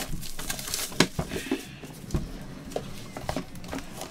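Handling noise as a cardboard trading-card box is opened and a plastic card case is lifted out. Scattered light clicks and knocks, with a brief rubbing scrape about a second and a half in.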